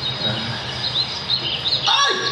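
Small birds chirping in quick, rising and falling chirps from about a second in, over a steady background hum.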